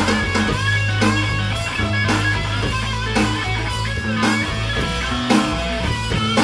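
Loud live rock band passage led by a Les Paul-style electric guitar through a Marshall amp, playing bent lead notes over a sustained bass and drum hits roughly once a second.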